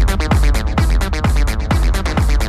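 Techno playing: a steady four-on-the-floor kick drum, about two beats a second, under ticking hi-hats and a dense repeating synth pattern.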